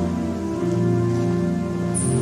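Organ music: slow, sustained chords, with the chord changing about half a second in and again near the end.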